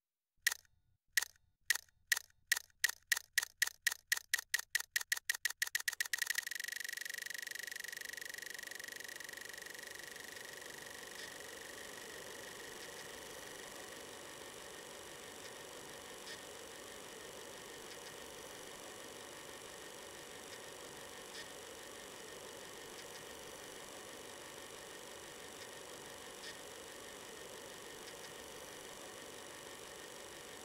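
Film transport mechanism starting up: clicks that speed up steadily until, about six seconds in, they blur into a steady run. It then settles into a continuous hiss with an occasional faint tick.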